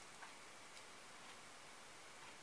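Near silence with a few faint clicks of handling as a thin plastic arm is pressed against a small wooden figure to set the glue.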